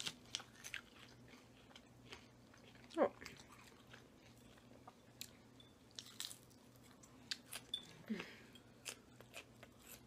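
Close-miked chewing and crunching of Caesar salad: crisp romaine lettuce and croutons being bitten and chewed, with many small wet mouth clicks. There is a short hummed 'mm' about three seconds in and a fainter one near eight seconds.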